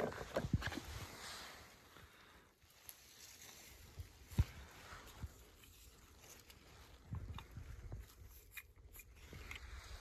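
Hands rummaging through dry leaves, pine needles and pine cones on mossy rocks: faint rustling with scattered small knocks and clicks, the sharpest at the very start and another about four and a half seconds in.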